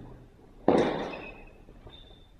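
Steel longswords clashing in sparring: one sharp, loud strike about two-thirds of a second in, with a high metallic ring that fades away over about half a second.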